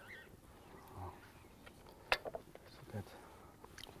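Quiet knife work: a kitchen knife slicing through a seared steak on a plastic cutting board, with one sharp knock of the blade on the board about two seconds in and a softer one shortly after.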